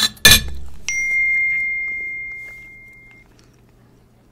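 A knock just after the start, then about a second in a single high, bell-like chime that rings and slowly fades over about two seconds.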